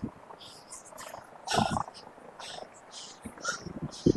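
A man breathing hard as he climbs a steep slope. Short, noisy breaths come every few tenths of a second, with a louder exhale about a second and a half in.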